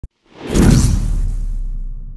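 Logo-sting whoosh sound effect that swells up about half a second in, over a deep low boom that slowly fades away.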